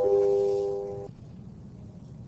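Electronic chime of four descending notes, each held as the next sounds, the lowest entering right at the start; all four cut off together about a second in.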